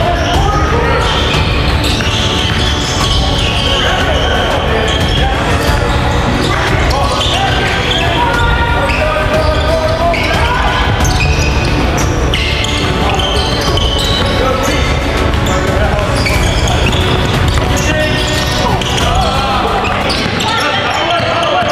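Live gym sound of a basketball game: a ball being dribbled on a hardwood court, mixed with players' and coaches' voices calling out in a large echoing hall.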